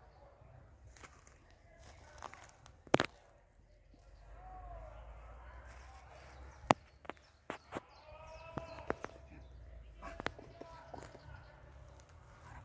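Distant voices calling, with several sharp clicks close by over a low rumble. The loudest clicks come about three seconds in and again just past the middle.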